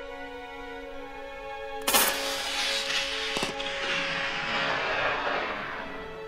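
A rifle shot about two seconds in, its report rolling and fading over the next few seconds, with a second sharp crack about a second and a half after it; background music with sustained tones plays throughout.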